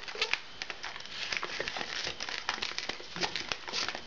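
Latex modelling balloons being handled and twisted by hand: irregular rubbing, crinkling and crackling of the inflated latex, with a couple of brief squeaks.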